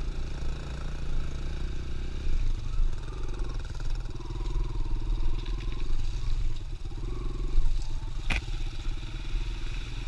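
Kawasaki KLX 140L dirt bike's single-cylinder four-stroke engine running as the bike rides a dirt trail, its note shifting about two and a half seconds in, with a sharp clack a little after eight seconds.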